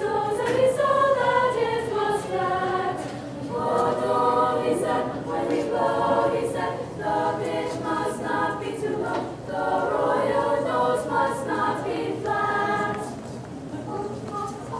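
Unaccompanied choir of women's voices singing in several parts, in phrases with brief breaks between them, the singing dropping away shortly before the end.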